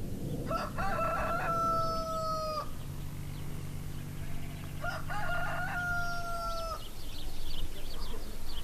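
A rooster crowing twice, each crow about two seconds long and ending on a long held note, the second coming about four seconds after the first.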